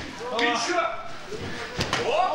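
A single sharp impact in a wrestling ring near the end, following a few brief voices from the crowd or commentary.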